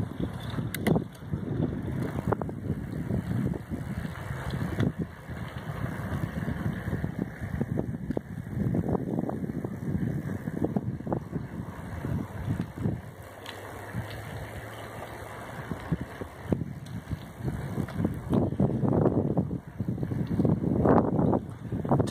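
Wind buffeting the microphone of a handheld camera on a moving bicycle: a gusty low rumble that rises and falls, with the bike's tyres rolling on asphalt beneath it.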